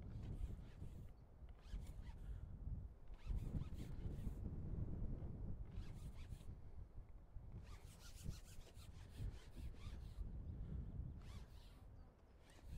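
Wind buffeting the microphone, a constant uneven low rumble. Over it come about six short bursts of scratchy rustling and rubbing from the angler's clothing and pole as he plays a hooked fish on a long fishing pole.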